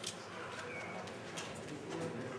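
Steel-tip darts being pulled out of a bristle dartboard, with a sharp click at the start and another about a second and a half in. A low murmur of voices in the room sits underneath.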